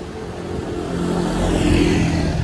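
A motor vehicle passing on the street, its engine and tyre noise growing louder toward the end.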